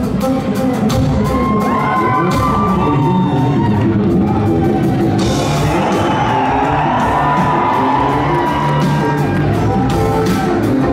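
Live funk band playing a drum-kit and electric-bass groove in a large hall, with audience members whooping and yelling over the music.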